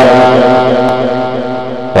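A man's voice holding one long, drawn-out note at a steady pitch that slowly fades out.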